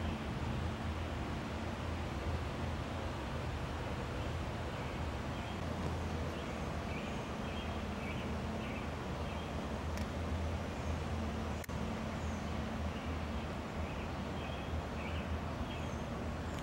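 Backyard outdoor ambience: a steady low hum with faint short bird chirps now and then, and two sharp clicks near the two-thirds mark.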